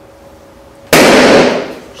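A large white latex balloon bursting with a single loud pop about a second in, followed by a short echo dying away. It bursts because a laser aimed at a black marker dot on its surface heats that spot.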